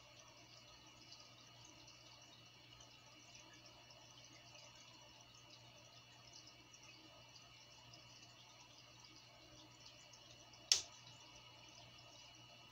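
Near silence: quiet room tone with a faint steady hum, broken once by a single sharp click near the end.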